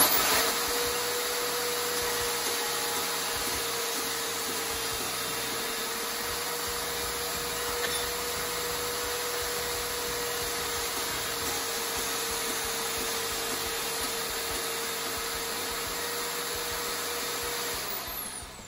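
Milwaukee portable bandsaw running steadily with a constant whine, cutting 1/8-inch aluminum bar. It switches on sharply at the start and stops near the end.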